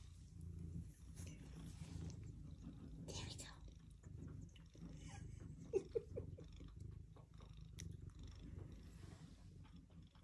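A cat purring steadily close to the microphone, with two short louder sounds just before six seconds in.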